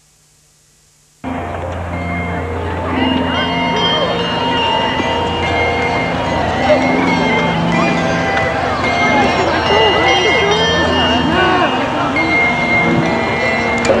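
Outdoor crowd chatter with voices of adults and children, over music of long held notes that change pitch every second or so; the sound cuts in suddenly about a second in.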